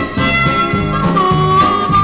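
Instrumental break in a country song: a lead instrument holds long notes over a walking bass line and a steady beat, with no singing.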